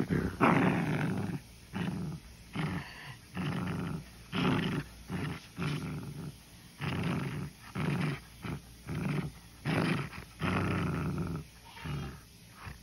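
A puppy growling in about a dozen short bursts with brief pauses between them, while tugging a plush toy against a person's hand: play growling in a tug-of-war.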